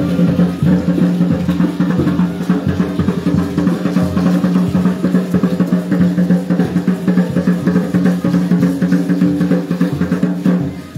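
Drums playing a fast, dense, steady beat for the danza dancers, over a steady low tone held underneath without a break.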